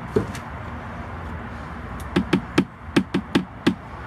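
A cast iron Dutch oven being set down and handled on a table: one sharp knock, then, about two seconds in, a quick run of about seven hard knocks and taps over less than two seconds.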